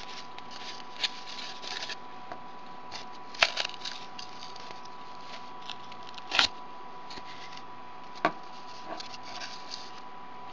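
Embroidery threads being lifted out of and pulled into the notches of a cardboard braiding disc: soft scratchy rustling of thread and cardboard, with four sharp clicks spread through it.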